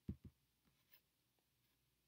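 Computer mouse button double-clicked: two quick, short clicks just after the start, opening a folder in a file dialog, then near silence with one faint tick about a second in.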